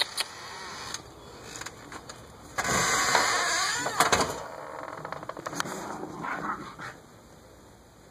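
A glass storm door being unlatched and opened to let a dog out: a click at the start, then a loud rushing scrape of about two seconds with sharp clicks near its end, followed by quieter rustles and clicks.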